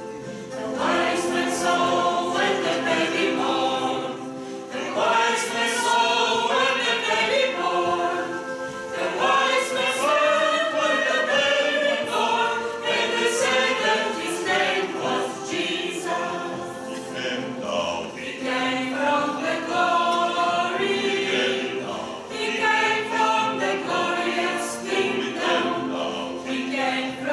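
A mixed church choir of men and women sings a hymn. It comes in loudly about a second in, and its phrases break briefly every few seconds for breath.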